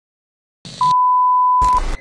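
A single steady electronic beep, held for about a second, between two short bursts of static.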